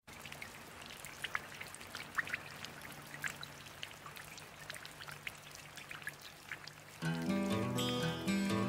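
Recorded rain sound effect opening a song: a steady hiss of rain with scattered drips. About seven seconds in, louder music with sustained chords comes in over it.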